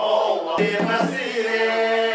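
A group of voices chanting in long, held notes, with a sharp knock about half a second in.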